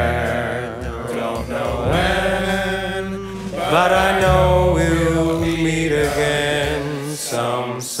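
Slow vocal ballad: a male voice sings long held notes with vibrato over a bass line that steps from note to note.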